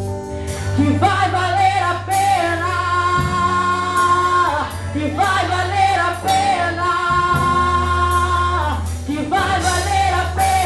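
A woman singing a Portuguese gospel worship song into a microphone, holding long notes, over instrumental accompaniment with a steady low bass.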